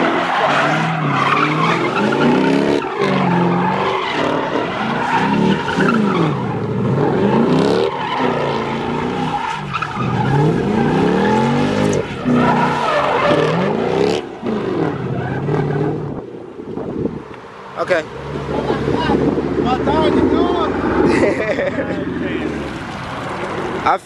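Chevrolet Camaro doing donuts: the engine revs up and down over and over while the rear tyres squeal, spinning on asphalt.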